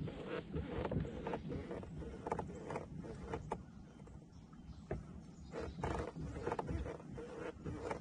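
Uneven low rumble of wind buffeting the microphone, pulsing irregularly, with a faint steady hum underneath.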